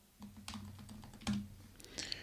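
Typing on a computer keyboard: a quick, uneven run of faint key clicks.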